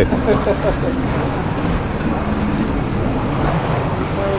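Small tour boat's motor running steadily with water noise around the hull, and faint voices in the first second.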